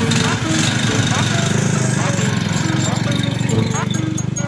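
The bar stool kart's 420cc Predator single-cylinder engine running steadily as the kart pulls away down the street.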